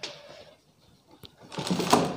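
A knock, then a dense clatter and rustle of objects being handled that builds up about one and a half seconds in and is loudest at the end.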